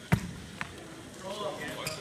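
A single sharp smack about a tenth of a second in, from two wrestlers hand-fighting on the mat, followed by a fainter click.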